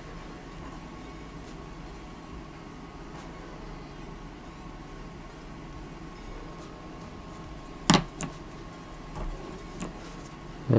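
Steady low room hum with a faint steady whine, then about eight seconds in a sharp click followed by a few softer knocks as the inking pen is lifted off the page and put down.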